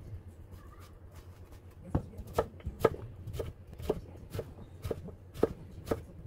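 Chef's knife dicing a zucchini on a wooden cutting board. Single knife strikes against the board come about twice a second, starting about two seconds in.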